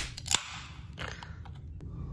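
Aluminium beer can being opened: the pull-tab cracks sharply with a short fizz of escaping gas, about a third of a second in.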